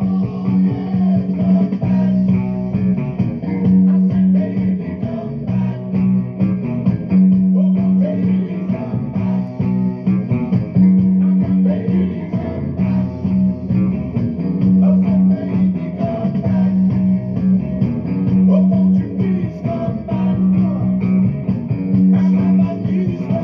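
Electric guitar played through an amp: a Stratocaster-style solid-body picking melodic lines, over a recurring low held note.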